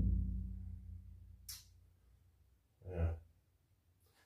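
Low ring of a steel bulkhead panel and pickup bed dying away after being knocked into place, with a faint click. A man's short sigh follows about three seconds in.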